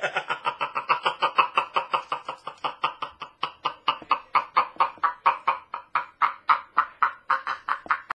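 A man laughing in a long, steady string of "ha" syllables, about five a second: an exaggerated, taunting laugh.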